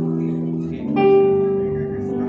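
Electric guitar played through an amplifier, slow held chords, with a new chord struck about a second in.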